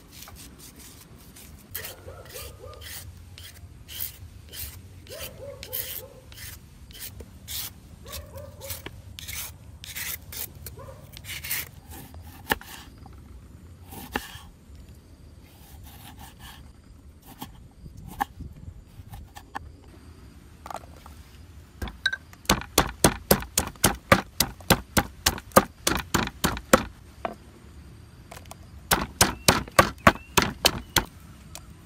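A kitchen knife slicing and scraping kernels off raw corn cobs, with irregular crisp cuts, then a few knife cuts through limes on a wooden board. About two-thirds of the way in, a wooden pestle starts pounding garlic and chillies in a mortar in quick, even strikes, about three a second. These are the loudest sounds; they stop briefly and then start again near the end.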